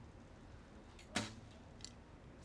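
Recurve bow shot: one sharp snap of the string on release a little over a second in, with a fainter click near the end.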